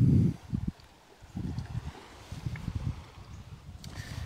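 Wind buffeting the microphone outdoors: irregular low rumbling gusts over a faint steady hiss. The gusts ease off about half a second in and pick up again after a second or so.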